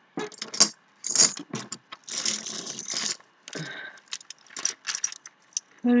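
Metal ball chains and their dog tags jingling and clinking in the hands as a chain is pulled free of a tangle, a run of irregular light clinks and rustles.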